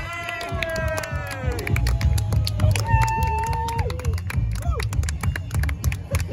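Music with a steady bass beat and long held notes that slide down in pitch, with voices in the crowd.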